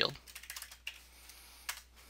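Computer keyboard typing: a few quiet keystrokes in the first second, then one sharper click a little later.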